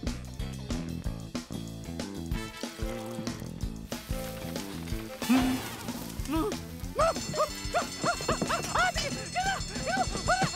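Cartoon score with swing-style music, then from about five seconds in a cartoon character's rapid string of short yelps, each rising and falling in pitch, over the music.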